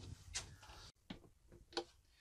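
A few faint, short clicks and knocks from hands working the caravan's switches and cupboard fittings: one about a third of a second in, and two more in the second half.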